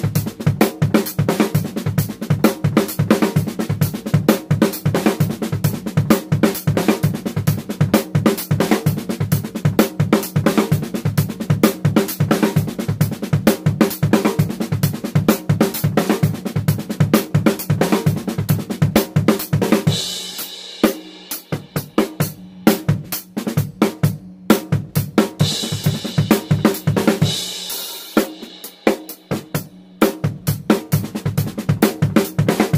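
Acoustic drum kit played in a fast, even stream of double strokes around the snare and toms, with bass drum underneath. About twenty seconds in, the low drums drop back and cymbals ring out, and this happens twice.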